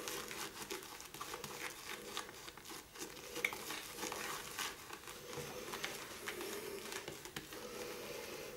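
Shaving brush whipping soft shaving soap into thick lather in a mug: a continuous wet, crackling squish of foam made of many small quick clicks.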